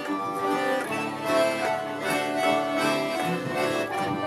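Diatonic button accordion playing a tune, a melody over held chords, the notes changing every fraction of a second.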